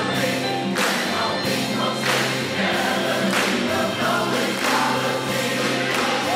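Music: a choir singing in a gospel style over instrumental backing with a steady beat.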